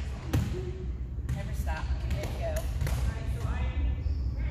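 A ball bouncing on a hardwood gym floor: a handful of sharp thumps at uneven intervals, over a steady low hum and faint voices in a large hall.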